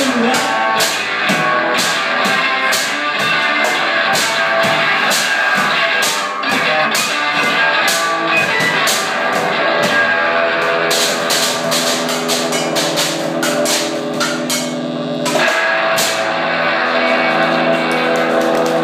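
Live instrumental rock from a guitar-and-drums duo: electric guitar chords over steady, fast drumming on a makeshift kit of metal cans. The guitar holds a sustained chord for a few seconds past the middle, then the part changes.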